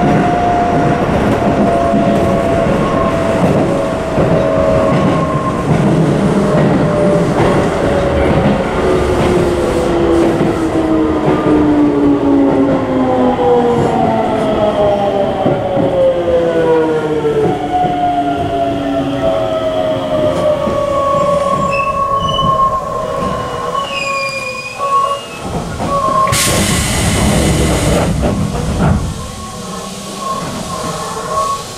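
Keisei 3700 series commuter train heard from inside the car as it brakes into a station: the traction motors' whine falls steadily in pitch under the running noise, with higher squealing tones as it nears a stop. About 26 seconds in comes a loud hiss lasting a few seconds.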